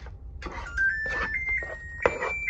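An electric oven's electronic signal: a run of held beep tones stepping up in pitch, its preheat signal, beginning under a second in. Under it come the scraping strokes of a plastic spatula stirring mashed sweet potato in a dish.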